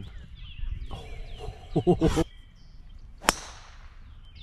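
A golf club striking a ball once with a sharp crack about three seconds in. Just before it there is a brief voice, and a bird chirps repeatedly with short falling calls in the background.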